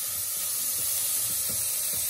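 Chopped carrot, celery and mushrooms sizzling in butter in a stainless steel saucepan as a spoon stirs them: a steady, even hiss.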